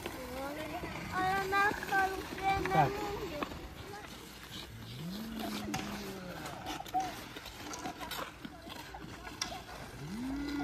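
A high-pitched voice talks or calls for a couple of seconds near the start, then a lower voice slides up in pitch and holds briefly about five seconds in. Light clicks and scrapes follow in the second half, fitting ice-skate blades on the ice.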